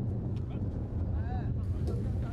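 Steady low rumble of wind buffeting the microphone outdoors, with a short voice call just past a second in.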